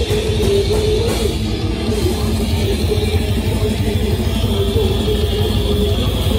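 A live death metal band playing loud, with distorted electric guitars, bass and a drum kit in a continuous dense wall of sound.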